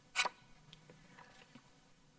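A single short paper flick as a number card is turned over, followed by a few faint soft handling ticks.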